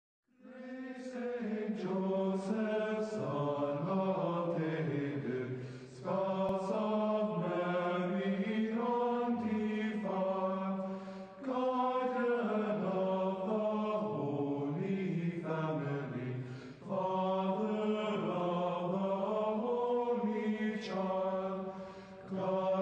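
A man's solo voice chanting an Orthodox Byzantine hymn: long held, gliding phrases of about five seconds each, four in all, with brief breaks for breath between them.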